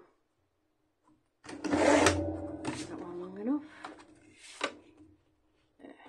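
A sliding paper trimmer's blade drawn along its rail, cutting through card: a long scraping stroke about a second and a half in, then a shorter one about a second after it ends.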